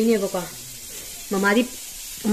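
A woman talking in short phrases, with a faint steady hiss in the pause between them.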